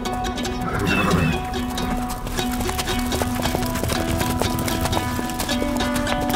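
Several horses walking, their hooves clopping on turf, under a film score of held tones.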